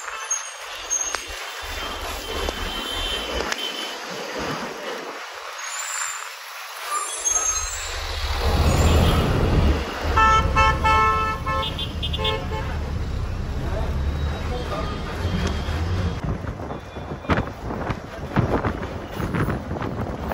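A moving bus's engine rumble swells up about eight seconds in. Shortly after, a horn sounds a quick run of short toots. Near the end, wind buffets the microphone as the bus gathers speed on the open road.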